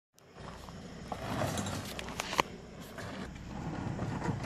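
Hand pallet jack under a heavy load, its wheels rolling and crunching over gravel, with scattered clicks and knocks over a low steady rumble.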